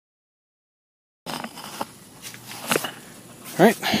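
Dead silence for just over a second, then faint garage room noise with a few light knocks or clicks, and a man's voice saying "Alright" near the end.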